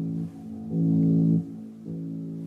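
Movie-trailer music with held low notes, playing through the mirror's speaker. It gets louder about two-thirds of a second in and drops back about half a second later, as the volume is slid up and down with two fingers.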